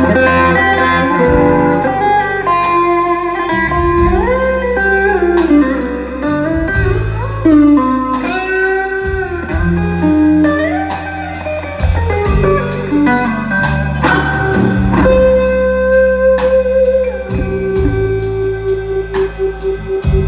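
Live instrumental blues trio: an electric guitar carries the melody with notes that bend and glide in pitch, over electric bass and a drum kit keeping a steady cymbal beat.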